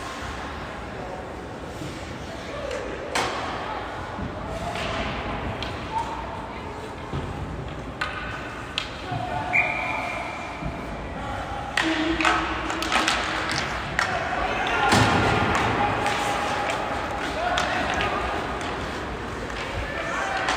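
Ice hockey rink sound: scattered distant shouting voices, with sharp clacks and thuds of sticks and puck on the ice and boards. The clacks and thuds grow more frequent in the second half as play restarts after a face-off, and all of it echoes in a large arena.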